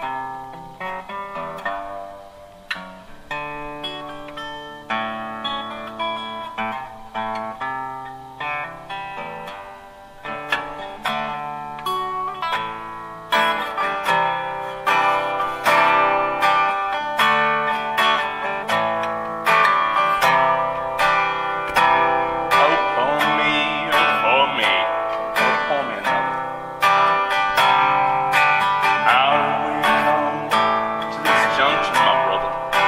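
Acoustic guitar played solo in the key of D, the song's introduction: single picked notes at first, then fuller and louder strumming from about 13 seconds in.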